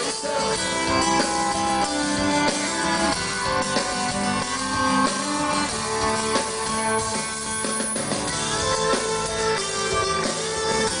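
Live acoustic rock band playing an instrumental passage: acoustic guitars with upright bass and light drums, with no vocals.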